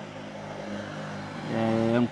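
A steady low engine hum, like a vehicle running nearby, throughout. About a second and a half in, a man's drawn-out hesitation sound at a level pitch, a held "uhh", is the loudest thing.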